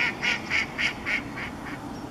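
A duck quacking: a quick series of about seven quacks, about three a second, fading toward the end.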